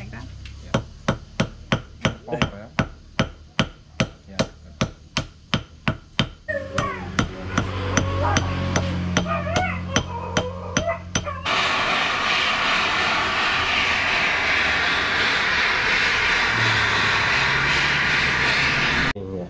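Hand hammer striking a silver bar on a small steel anvil, sharp metallic blows about three a second, with voices behind the later blows. About two-thirds of the way in, a gas torch flame takes over with a loud, steady hiss, heating the silver.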